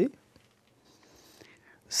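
A man's speaking voice trails off, then a pause of about a second and a half with only a faint breath, before his speech starts again near the end.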